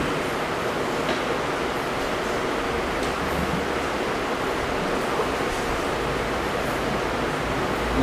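Steady, even hiss with no other clear event: room tone and recording noise.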